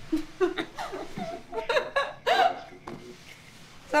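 A woman laughing in short, breathy bursts, broken by little gasps. At the very end a woman's voice starts to speak.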